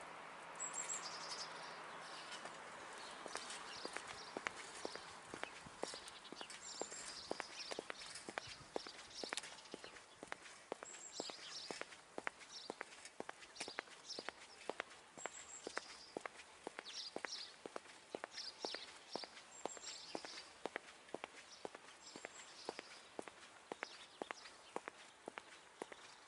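Footsteps walking steadily on a brick-paved path, about two steps a second. A bird gives short high chirps every few seconds above them.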